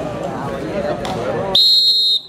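A referee's whistle blown in one short, loud, steady blast of about half a second near the end, after crowd chatter. It marks the end of a kabaddi raid, with a point going to the raiding side.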